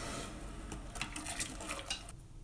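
Granulated sugar pouring from a plastic scoop into a stainless steel pot of hot water, with a few light clicks as a plastic spoon stirs it in against the pot.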